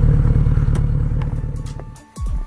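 Kawasaki Z900RS inline-four engine running steadily at low revs on a ride, with some wind noise, fading out near the end as music fades in.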